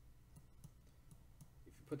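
Faint, irregular clicks and taps of a pen stylus on a tablet while handwriting on screen.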